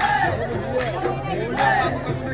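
Live Bihu folk music: a high voice sings an arching melody over occasional drum strokes, with crowd chatter underneath.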